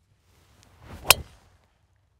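A golf driver swung off the tee: a short rising whoosh of the downswing ending, about a second in, in one sharp crack as the clubface strikes the ball.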